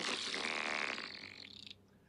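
A man blowing a raspberry, a buzz of the lips lasting about a second and a half and fading out. It is meant as the sound of a lower intestine falling out.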